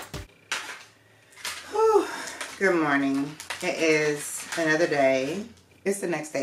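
A woman's voice making drawn-out, sliding vocal sounds with no clear words, starting about a second and a half in.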